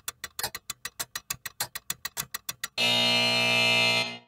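Game-show style slot-machine sound effect. A rapid run of clicks, about seven a second, runs like a spinning reel for under three seconds. It ends in a harsh buzzer for a little over a second, signalling a losing result: no answer.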